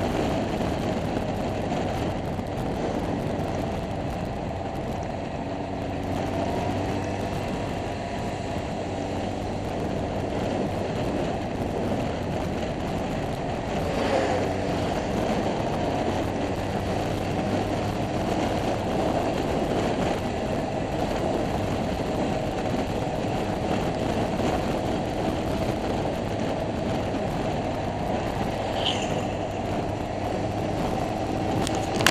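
A motor scooter running at road speed, heard on board: a steady rush of wind and road noise with the engine running evenly underneath. There is a brief thump about halfway through.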